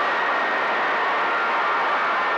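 CB radio receiver hiss and static on channel 28 between transmissions: a steady, narrow-band hiss with a faint steady whistle running through it.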